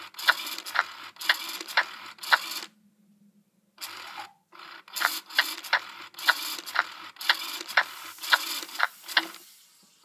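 Baby Alive doll's motorized mouth chewing on a spoon: a small motor whirring with a regular click about twice a second. It stops for about a second, then starts again.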